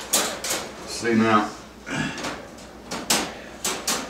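Metal wire dog crate door being latched shut: rattling wire and several sharp metallic clicks of the latches.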